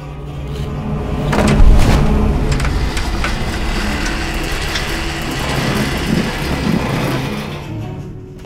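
Film-score sound design: a dense rumbling drone with a low hum swells up, hits hard about a second and a half in, holds, and dies away near the end, building tension.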